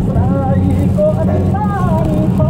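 Steady road and tyre noise inside a car driving on a wet highway, with a voice singing a melody over it.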